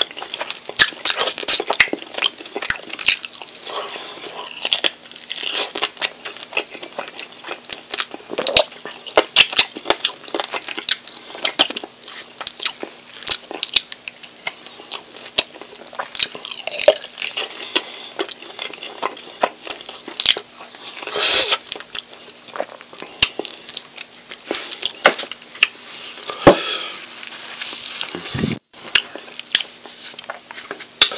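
Close-miked chewing and biting of sauce-covered buffalo chicken wings: a steady run of wet mouth clicks and smacks as meat is pulled off the bone, with a few louder moments about two-thirds of the way through.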